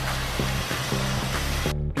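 Pressure washer's lance spraying a high-pressure water jet onto slate roof tiles: a steady, loud hiss that cuts off suddenly near the end, over background music.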